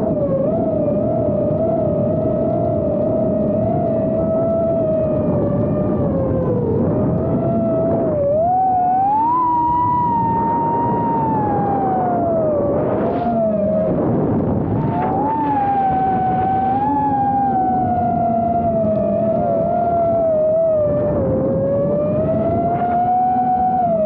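Propeller and motor noise recorded from a chase quadcopter flying alongside a chainsaw-engined model airplane. A steady, loud whine wavers in pitch, glides up about nine seconds in, falls back, rises again and slowly eases down as the throttle changes. A lower steady drone runs underneath in the second half.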